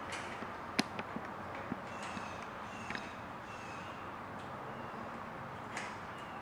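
A few faint, sharp clicks and taps of a metal bolt and bracket being handled and fitted into a golf cart's roof support frame. The sharpest click comes about a second in, over quiet room tone.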